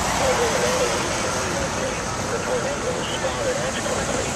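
A car passing close by on the street, over steady traffic noise, with people's voices in the background.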